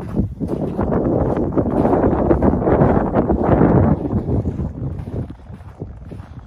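Wind buffeting the phone's microphone: a loud rushing noise that swells over the first few seconds and dies down after about four seconds in.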